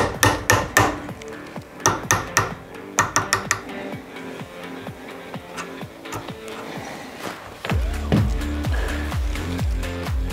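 Hammer tapping a drift punch to drive the factory rear sight sideways out of the Walther PDP slide's dovetail: quick runs of light taps in the first few seconds, sparser after. Background music plays throughout, with a steady beat coming in near the end.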